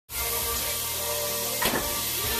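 Chopped garlic frying in a sauté pan, a steady sizzle, with a brief knock about one and a half seconds in.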